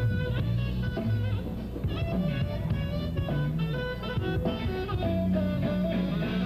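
Live band playing an instrumental passage without vocals: a guitar picking out single notes over a moving bass line.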